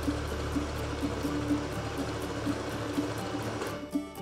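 Instrumental background music with a steady beat. Under it a Janome electric sewing machine runs in a steady whir and stops just before the end.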